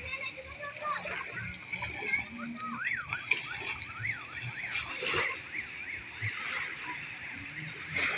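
Small waves washing and splashing onto a sandy shore, with people's voices in the background, including some high wavering calls in the middle.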